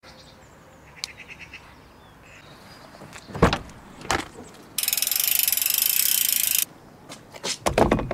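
Handling of a car and its roof bike carrier: a few small clicks, two sharp knocks, then a loud rapid mechanical rattle lasting about two seconds, and more clicks and knocks near the end as a mountain bike is lifted onto the carrier.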